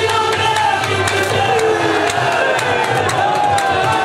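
Qawwali performance: lead singers singing in full voice over steady percussion, with crowd voices and cheering rising behind them.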